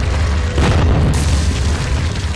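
Cinematic wall-smash sound effect: a deep boom about half a second in over a heavy low rumble, followed by the crackle of crumbling rubble, with music underneath.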